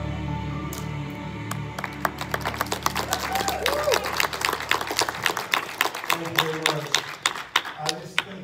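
Church congregation applauding at the end of a song: separate handclaps begin about a second and a half in and build into steady applause, while the accompaniment's final held chord stops about five seconds in.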